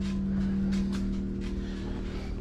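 A steady low-pitched hum, with a few faint soft knocks.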